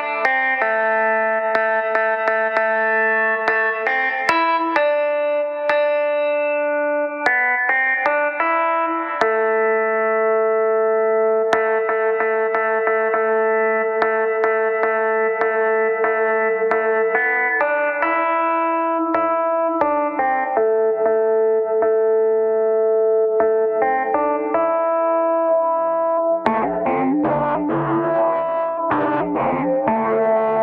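Software steel guitar played from a keyboard through the Combustor resonator effect: held, ringing notes rich in overtones, changing pitch every second or few. Near the end the sound turns into a dense, rattling, distorted resonance as the resonator feedback is pushed.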